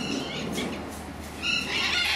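Macaw calling: a short, harsh squawk about one and a half seconds in, after softer sounds.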